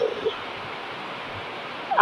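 Heavy rain falling steadily, an even hiss.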